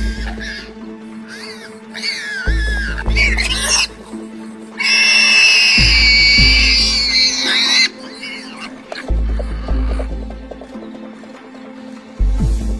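Background music with a deep bass hit every three seconds or so, over which a warthog squeals in distress as a lioness grabs it; the longest, loudest squeal runs from about five to eight seconds in.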